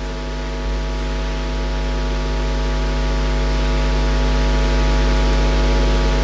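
A steady electronic hum with hiss over the rink's sound system, slowly swelling louder: the lead-in to the skater's program music, just before its organ comes in.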